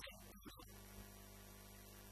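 Near silence: a steady low electrical hum with faint hiss. A short sound carried over from before dies away within the first second.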